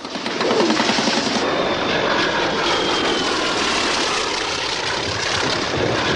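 Aircraft engine droning steadily, with a faint whine that falls slowly in pitch.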